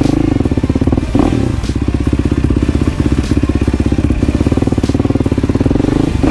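Yamaha YFZ450R's single-cylinder four-stroke engine running at low revs as the quad rolls off gently, with a short blip of throttle about a second in. It is a new engine being broken in, ridden easy.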